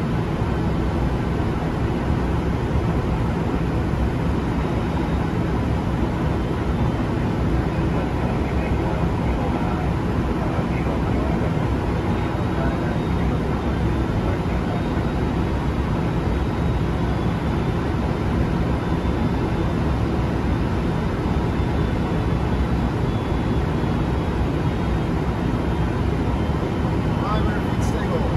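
Steady flight-deck noise of an airliner on final approach: an even rush of airflow and engine noise with a low rumble underneath, holding level throughout.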